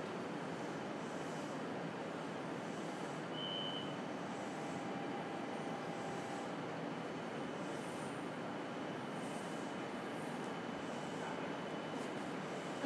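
Inside a JR Kyushu 303 series EMU motor car standing at a station: a steady, even hum and hiss from the stationary train's onboard equipment. A short high beep sounds about three and a half seconds in.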